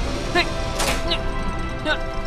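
Cartoon sound effect of a rocket pack's boosters swinging down and locking into place: a short, sharp mechanical burst about a second in, over background music.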